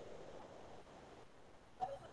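Faint room noise over an online-class audio feed, with a single sharp click near the end.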